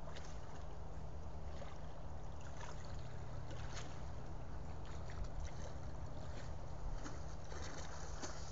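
A tiger wading through a shallow pond, the water sloshing and splashing irregularly with its steps, over a steady low hum.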